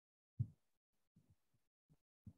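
A few short, muffled low thumps in otherwise near-quiet room tone. The loudest comes about half a second in, with fainter ones around a second later and near the end.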